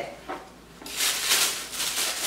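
Tissue paper rustling and crinkling as a shoe box is opened, starting about a second in.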